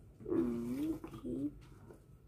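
A young girl's wordless vocal sound, hum-like and in two parts: a longer one of about a second with its pitch dipping and rising, then a shorter one.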